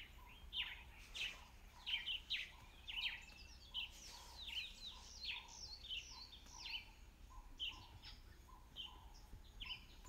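Wild birds singing, faintly: a busy, continuous run of short chirps that sweep quickly downward in pitch, with a lower note repeating about twice a second beneath them.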